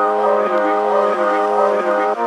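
Background music: held brass-like chords that change every half second or so.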